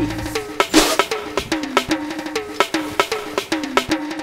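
Marching band striking up: snare and bass drums in a quick, uneven run of hits, with short pitched notes between them.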